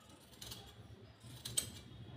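Large fabric scissors cutting through cloth, two snips about a second apart, the second louder.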